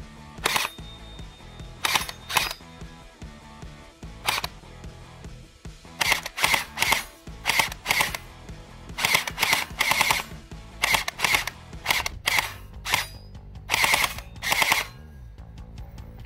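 Gel blaster firing about twenty shots, each a sharp crack with gel balls smacking an aluminium target. The shots come singly at first, then in quick runs through the second half, over background music.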